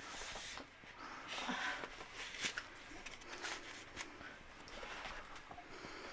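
Faint handling sounds of a tall stack of hardcover books being added to and shifted: soft rustles and a few light knocks scattered through, with short breathy laughs.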